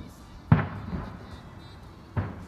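Aerial firework shell bursting once with a sharp boom about half a second in, its rumble trailing off quickly.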